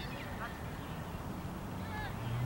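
Open-air ambience of distant voices, with a few short, high chirping calls near the start over a steady low rumble.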